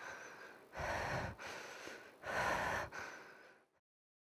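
A person breathing heavily: two loud, rasping breaths about a second and a half apart, each trailing off, before the sound cuts off abruptly near the end.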